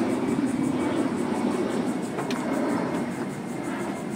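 Steady low rumble of vehicle noise, easing slightly towards the end, with a single brief click a little over two seconds in.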